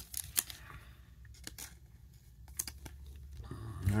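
A Prizm baseball card being slid into a plastic card sleeve and handled: faint rustling with a few scattered light clicks.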